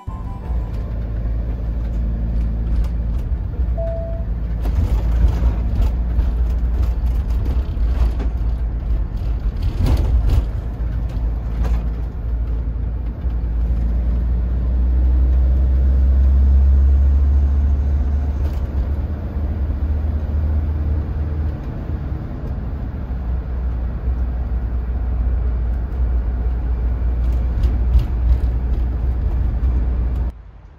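Steady, heavy low rumble of a car driving along a city street, heard from inside the moving vehicle, swelling for a few seconds midway. A few brief knocks from bumps in the road come through.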